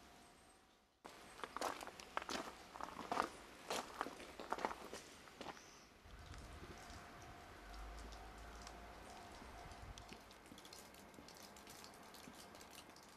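Footsteps crunching on gravel, an irregular run of sharp crackly steps that starts suddenly about a second in and stops about halfway through. After that, only a faint outdoor background with a thin steady hum and a low rumble.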